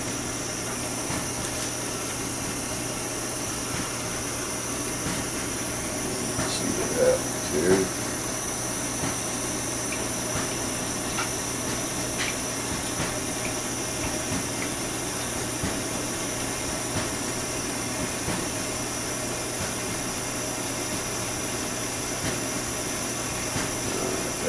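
Steady hiss of a small propane torch burning with a thin blue flame, a chunk of ice and snow held in the flame to melt it.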